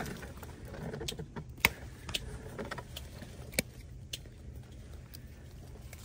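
Grape-picking shears snipping several times while a bunch of table grapes is cleaned of rotten berries on the vine: short sharp clicks, the loudest about one and a half seconds in.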